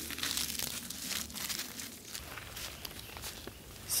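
Irregular crunching and rustling, busiest in the first two seconds and fainter after, like feet moving through dry leaf litter.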